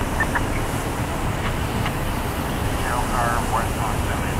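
Ford Police Interceptor Utility SUVs driving past one after another: a steady low rumble of engines, tyres and wind. Voices of bystanders come through briefly about three seconds in.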